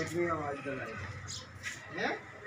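A person's voice, drawn out and falling in pitch, in the first second, followed by quieter background with two short hissy sounds near the end.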